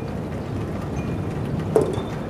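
Steady low noise of storm wind outdoors, with a short sharp sound near the end.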